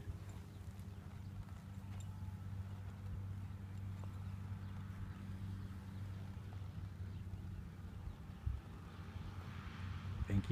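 A horse's hooves shifting on a dirt pen floor as it steps its hindquarters around, a few soft thuds over a steady low hum.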